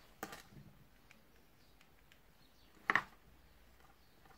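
Two brief clicks from a cream make-up stick being handled and put to the cheek, the second louder, about three seconds in, over quiet room tone.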